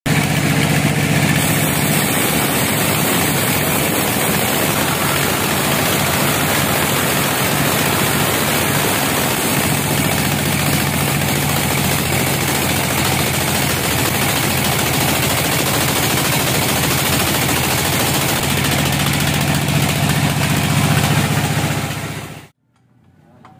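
Band sawmill cutting lengthwise through a large teak log: a steady, loud run of the blade rasping through the wood over the constant hum of the saw's drive.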